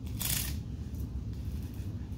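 A fabric strap is pulled through the plastic buckle of a humeral fracture brace, with one short rasp of the strap sliding shortly after the start, then faint rustling as it is handled.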